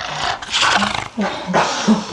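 Harsh growling, roaring vocal sounds in about four short bursts.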